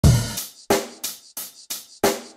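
Drum beat opening a music track: a deep kick-and-cymbal hit, then four sharp drum hits with ringing tails, about three a second.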